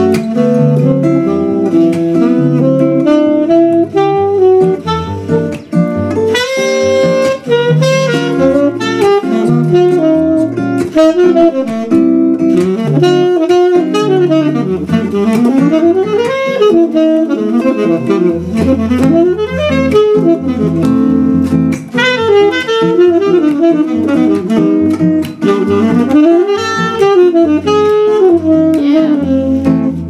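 Saxophone playing a jazzy, ornamented solo melody with gliding runs, accompanied by an acoustic guitar's chords and bass notes.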